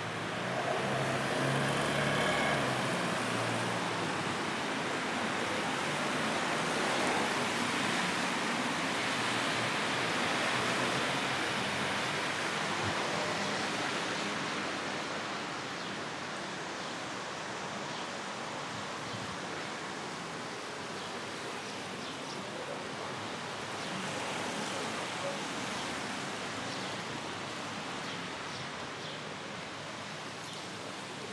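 Town street ambience on wet roads: a steady hiss of car traffic on wet asphalt, louder for the first ten seconds or so and then easing off, with faint voices of passers-by.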